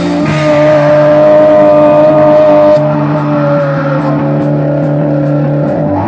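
Live rock band playing through amplifiers: distorted electric guitars and bass holding long, sustained notes, with only sparse drum hits. The highest held note droops slightly in pitch about halfway through, and the band gets a little quieter just before the halfway point.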